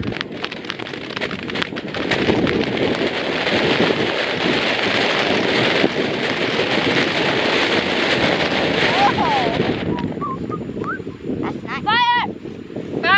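Ground fountain firework spraying sparks with a steady hiss that cuts off suddenly about ten seconds in as it burns out.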